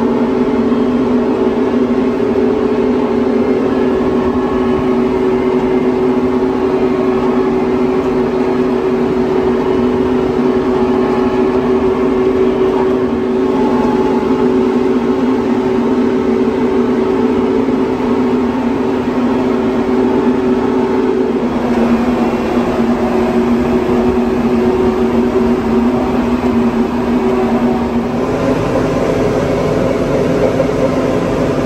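Tractor engine running steadily under way, a loud even drone. Its note drops slightly about two-thirds through and shifts again near the end.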